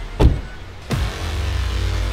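Dramatic background score with a deep bass drone and two heavy hits, one about a quarter second in and one just under a second in, each falling away in pitch.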